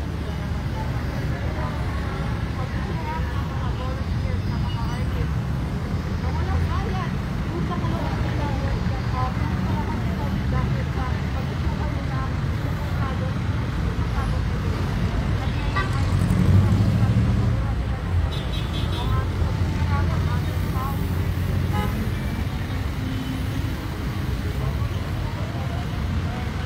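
Steady outdoor traffic rumble with indistinct voices talking in the background, swelling louder about sixteen seconds in.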